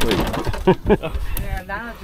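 Excited human voices exclaiming and laughing.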